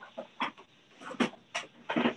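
A preacher's voice through a handheld microphone in a quick run of short, loud exclamations with brief gaps between them.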